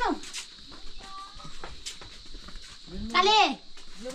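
A goat bleating: a loud quavering call that rises and falls about three seconds in, after the falling end of another bleat at the very start.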